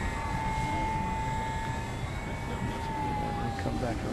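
Electric motor and propeller of an E-Flite Apprentice RC trainer plane whining steadily in flight, the pitch sagging slightly near the end, over a low rumble.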